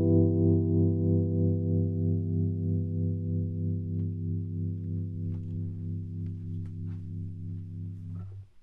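Final chord of a song held on a keyboard, ringing on and slowly fading, with a steady wavering in its volume.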